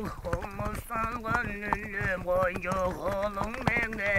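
Tuvan xöömei throat singing: a steady low drone with a wavering overtone melody above it. Horse hooves clip-clop underneath, as the song is sung on horseback.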